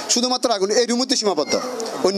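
A man talking in Bengali, speaking continuously into a close microphone.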